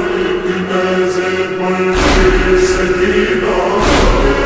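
Slowed, reverb-heavy noha: voices chanting a lament on long held notes. A deep low thump lands about halfway through and again near the end.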